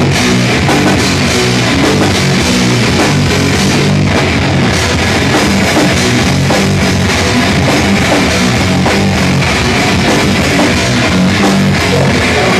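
Live rock band playing loud and without a break: electric guitar and a drum kit.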